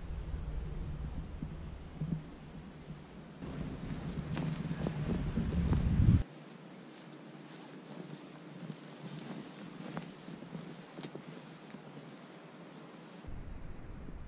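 Wind noise on the microphone with rustling, growing louder and then cutting off abruptly about six seconds in; after that, quieter rustling with a few faint clicks.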